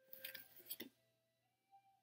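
Near silence: a few faint steady tones hang in the background, with some soft ticks in the first second.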